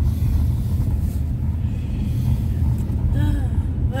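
Steady low rumble of a Honda CR-V's engine and tyres on a wet road, heard inside the car's cabin. A short voice sound comes near the end.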